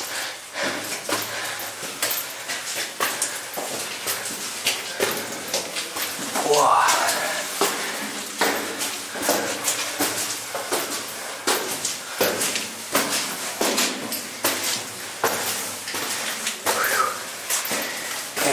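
Footsteps climbing stone steps in a narrow rock-cut tunnel: a continuous run of irregular taps and scuffs.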